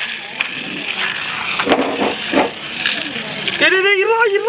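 Busy shop noise with indistinct voices and a few light clicks of plastic toy track and a toy car being handled. A voice calls out near the end.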